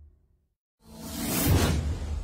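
Whoosh sound effect from an animated title sequence. After a moment of silence, a rising swish with a deep boom under it swells to a peak about a second and a half in, then fades into the intro music.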